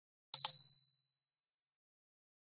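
Notification-bell sound effect of an animated subscribe button: two quick clicks and a single high ding that rings out and fades within about a second.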